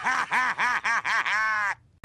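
Cartoon robot Bender's voice laughing hard, a fast run of about ten 'ha-ha' syllables that stops abruptly shortly before the end.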